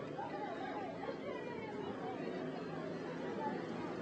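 Faint chatter of several people talking in the street, over a steady background of outdoor street noise.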